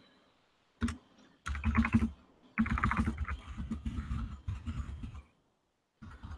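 Computer keyboard typing heard over a video-call microphone, in three bursts of rapid key clicks, the last and longest lasting nearly three seconds, with dead silence between them.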